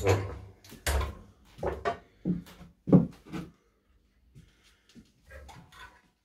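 Metal knocks and clunks at a bench vise while a nail is clamped in it: about six sharp knocks over the first three and a half seconds, then a few faint handling sounds.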